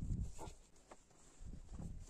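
Hands working the neck of a fur-covered animal-skin bag: a soft low thump at the start, then faint rustling and small knocks.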